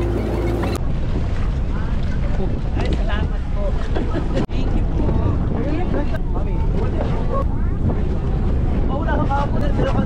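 Wind buffeting the microphone with a steady low rumble, over the indistinct chatter of people around.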